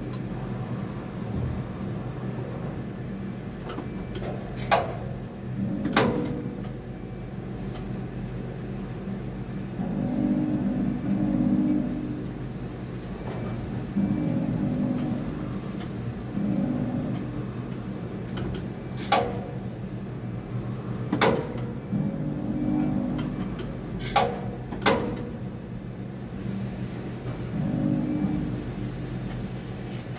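Steady mechanical hum of a tower crane heard from its operator's cab, swelling every few seconds as the drives take load. Sharp clicks come several times, two of them in pairs a second or so apart with a thin high whine between the clicks of each pair.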